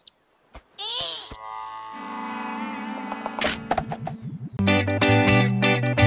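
Short cartoon sound effects with a quiet held note, then about four and a half seconds in a loud distorted electric-guitar jingle begins, strummed in quick rhythmic chords.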